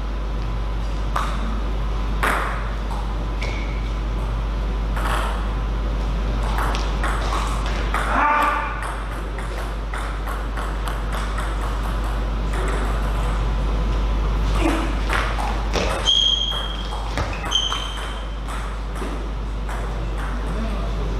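Table tennis rallies: a ball clicking sharply off bats and table in quick strings of hits, with pauses between points. A brief voice comes about eight seconds in, and two short high squeaks come near the end, over a steady low hum.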